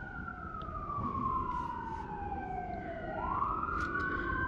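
Emergency vehicle siren wailing, its pitch sliding slowly up and down, with two wails overlapping and one climbing again about three seconds in.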